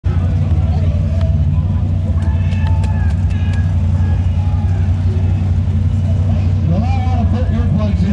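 A Pro Stock mud racing truck's engine idling loudly and steadily with a fast pulse as the truck sits and creeps at the starting line before a pass. Voices can be heard over it.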